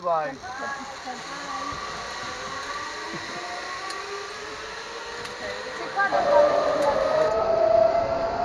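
Zipline trolley pulleys running along the steel cable, a steady metallic whine that rises slowly in pitch as the rider picks up speed and grows louder in the last couple of seconds.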